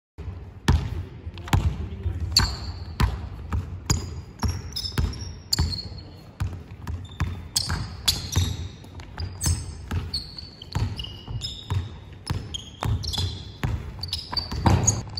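A basketball dribbled hard on a hardwood gym floor, about two bounces a second, with short high-pitched sneaker squeaks on the floor between bounces as the players move.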